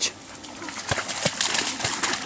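A chocolate Labrador retriever scrambling down a grassy bank into a pond: rustling and splashing with a few thumps of her paws, starting about half a second in.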